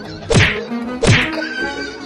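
Two sharp whacks about three-quarters of a second apart, over background music.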